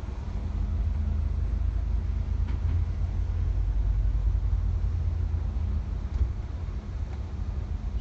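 Tour bus driving on a freeway, heard from inside the cabin: a steady low rumble of engine and road noise with a faint hum.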